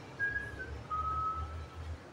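A cue strikes the cue ball on a pool table, and the ball rolls across the cloth with a low rumble. Over it come a few short, high whistled notes, the last one held for almost a second.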